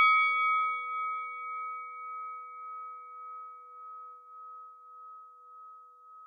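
The ring of a struck bell dying away slowly: one clear high tone over a fainter lower one, wavering gently in loudness as it fades.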